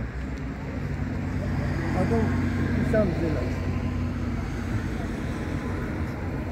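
A steady low hum of a motor vehicle engine running, with a few words of talk around two to three seconds in.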